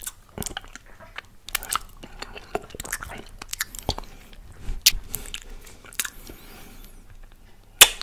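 Close-miked mouth sounds of licking and sucking melted ice cream off fingers: an irregular string of wet smacks and clicks, with the loudest smack near the end.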